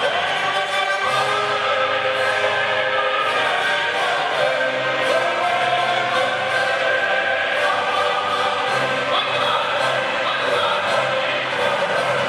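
Recorded opera played back in the hall: a tenor voice singing long held notes over orchestra and choir.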